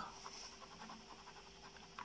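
Faint, rapid, even tapping of a plastic chocolate mould jiggled against the tabletop, which settles the melted chocolate in the cavities.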